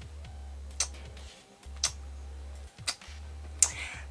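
A woman smacking her lips and tongue: four sharp, wet mouth clicks about a second apart, the habitual smack she makes when thinking.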